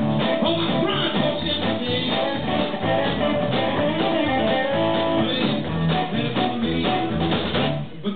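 Live blues band playing: electric guitar through a T-watt amplifier leads over a drum kit.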